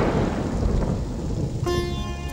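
Thunder rumbling and dying away over heavy rain. Music comes in near the end.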